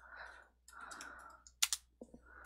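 Computer keyboard keystrokes: a few key clicks, the loudest two sharp ones in quick succession about a second and a half in, with faint soft noise in between.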